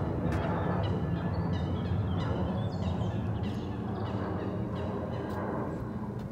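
A bird calling in a quick series of short, high notes, repeated over several seconds, over a steady low rumble.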